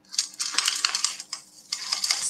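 Jewellery clinking as it is sorted by hand: many small, light clicks of metal pieces and beads knocking together, with a brief pause just past halfway.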